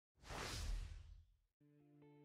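A whoosh sound effect: a rush of noise that swells and fades over about a second. Near the end a faint, steady musical chord begins.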